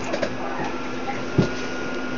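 Steady hum and hiss, like machine noise or static, with a faint held low tone; one dull thump about a second and a half in.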